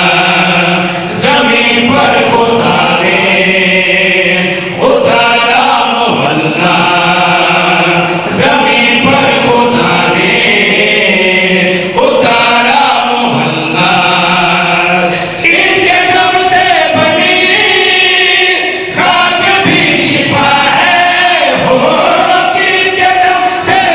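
A group of men singing a devotional qasida together into microphones, unaccompanied, in long held phrases that pause briefly every few seconds.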